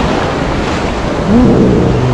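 Black Sea surf breaking and rushing around waders in the shallows, a steady loud wash of water.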